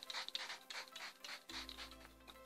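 Pump setting-spray bottle misting onto the face in a quick series of short hissing sprays, which stop about one and a half seconds in; a low steady hum starts at the same moment.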